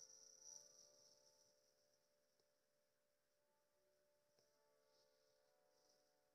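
Faint ringing of a struck bell dying away slowly, a clear high tone over several lower tones.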